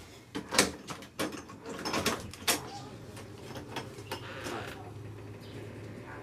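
A few sharp clicks and knocks as an apartment's front door is unlocked and opened, the loudest about half a second in, followed by a steady low hum.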